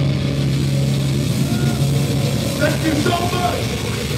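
Live metal band's amplified rig on stage: a low held note rings out and stops about a second in, then a loud din of stage noise with voices shouting near the end.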